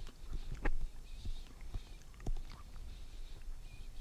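Soft, scattered clicks and small mouth and handling noises picked up close by headset microphones as gummy sweets are picked up, with a couple of sharper ticks.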